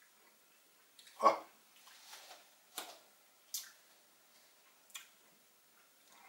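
Wet mouth sounds of a person tasting a sip of whisky: about five short smacks and clicks of the lips and tongue, the loudest about a second in.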